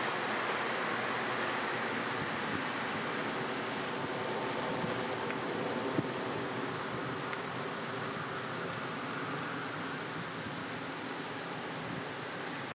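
A double-stack intermodal freight train's wheels rolling away on curved track, a steady rolling noise fading slowly as the last container cars recede. A single sharp click about halfway through.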